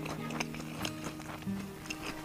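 Crisp crunching from chewing battered fried squid, a few irregular crunches. Background music with held notes plays under it.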